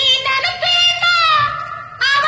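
A song with a high singing voice holding long notes that bend and slide in pitch over the accompaniment.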